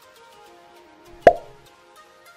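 A single sharp click-pop sound effect about a second in, the click of an animated subscribe button, over soft background music.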